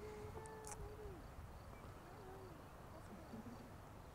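Faint, low hooting bird call: one long note of about a second that bends down at its end, then a shorter falling note about two seconds in.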